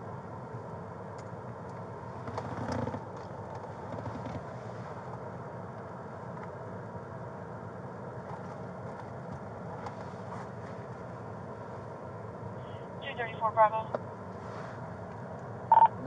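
Steady hum of a patrol car's cabin with the engine idling, with a soft rustle about two and a half seconds in. Near the end come two short bursts of warbling electronic chirps from the police radio.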